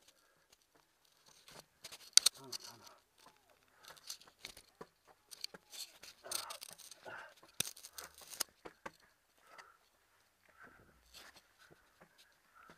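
Irregular scraping, rustling and knocking as a person crawls on hands and knees through an enclosed obstacle-course tunnel, with body, clothing and camera brushing the walls. A brief voice sound comes about two seconds in.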